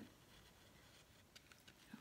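Near silence: room tone, with a few faint ticks about one and a half seconds in.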